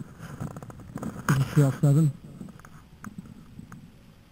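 A man's voice for about a second, a little after the start, in three short pulses. Around it is only a faint low rumble with a few small clicks.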